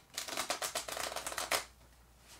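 A small travel-size tarot deck being shuffled by hand: a quick run of card flicks lasting about a second and a half that ends abruptly.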